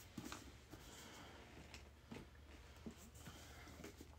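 Near silence: a few faint, scattered clicks and rustles as a leather handbag is handled and its flap strap and metal turn lock are worked open, over a low steady hum.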